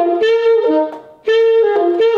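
Alto saxophone playing the short phrase G, F, G, F, D (alto fingering) twice, with the F notes ghosted: the key is only half closed and the air held back, so each F barely sounds between the held G's before the phrase falls to the D. The second phrase starts just over a second in.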